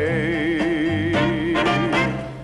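A male singer holds one long sung note with a wide vibrato, ending it shortly before the end, over an orchestra with a walking bass line.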